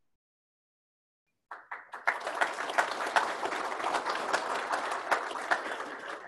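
Audience applauding, beginning about a second and a half in and continuing to the end, dense clapping with many individual sharp claps.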